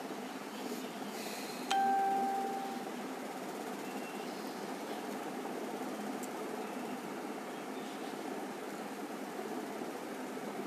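A single ding that starts sharply about two seconds in and fades out over about a second, over a steady low background hum.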